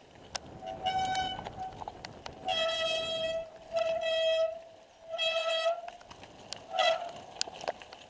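Mountain bike brakes squealing five times in steady-pitched blasts of up to about a second each, as the brakes are applied on a rocky descent. Under them run tyre rumble on the stony trail and sharp knocks and rattles from the bike.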